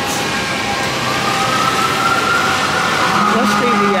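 Busy city street traffic on wet pavement, a steady hiss of tyres and engines, with a distant siren wailing in one slow rise and fall.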